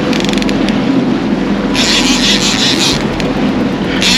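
Outboard motor of a small aluminium boat running under way, with water rushing along the hull, as the boat chases a hooked marlin. A higher hiss rises about two seconds in and lasts about a second.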